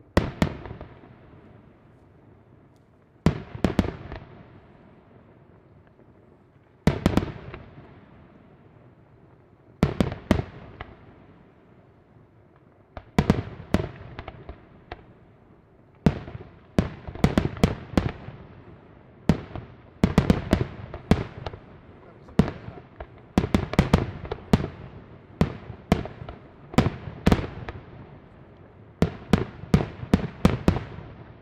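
Aerial firework shells bursting, each a sharp bang with a fading tail. The bursts come about every three seconds at first, then from about halfway they come faster, roughly one a second, some in quick pairs.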